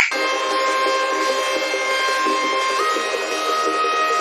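Sustained electronic synthesizer drone of many held tones, steady in loudness. About three seconds in, its upper tone steps up in pitch.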